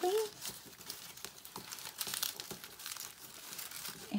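Tissue paper crinkling and rustling in irregular little crackles as a cut fringe sheet is rolled tightly by hand into a tassel.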